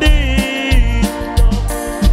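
Live band music with a steady drum beat and bass under a sustained melody line, with a singer at the microphone.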